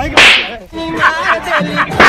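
Whip-crack sound effect: one sharp, loud noisy burst about a quarter of a second in, followed by a short run of pitched musical notes.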